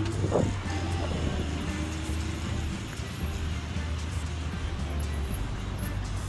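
Road traffic noise from cars passing on a busy multi-lane city road: a steady low rumble with an even hiss of tyres, and music heard alongside it.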